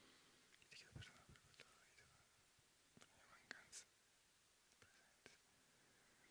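Near silence, with a few faint whispered hisses and small clicks.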